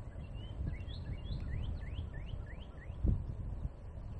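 A bird singing a quick series of about eight rising whistled notes, over a steady low rumble of riding noise, with a single thump about three seconds in.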